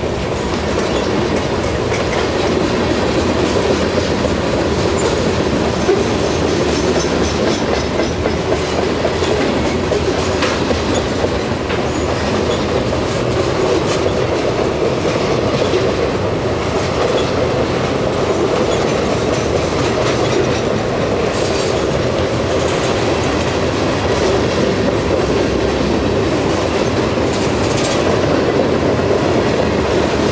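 Freight cars of a long mixed freight train rolling past slowly and close by: a steady rumble of steel wheels on rail, with repeated clicking as the wheels pass over the track.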